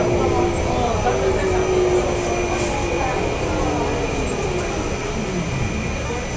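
Inside a San Francisco Muni transit vehicle: a steady running rumble with a motor whine whose pitch falls over the last couple of seconds as the vehicle slows.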